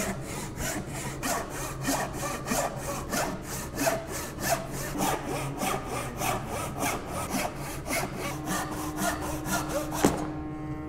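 Crosscut backsaw sawing down through a beech board by hand, a steady rhythm of strokes about three a second as the cut is taken through to the bottom.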